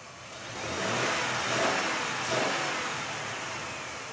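Off-road 4x4 pickup truck's engine revving under load as it climbs a muddy track, growing louder over the first second, peaking twice in the middle, then easing off.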